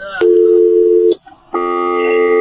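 Telephone dial tone, a steady two-note hum lasting about a second, then after a short break a second steady telephone tone with more notes in it that starts about a second and a half in, as a call is being placed.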